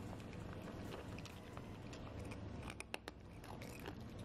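A cat eating dry kibble: a run of small, crisp crunches as it chews, with a few sharper clicks about three seconds in.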